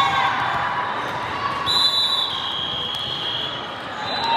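Volleyball referee's whistle blown once about two seconds in: one long tone that drops in pitch partway through, likely signalling the serve. Behind it is the steady chatter of a crowded sports hall, with a few thuds of balls hitting the floor.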